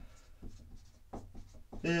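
Marker writing on a whiteboard: a quick series of short strokes as a word is written.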